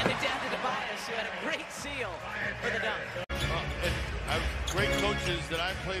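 Basketball game broadcast sound: arena crowd noise and voices with a basketball bouncing on the hardwood court. A sudden momentary dropout about three seconds in marks an edit cut between plays.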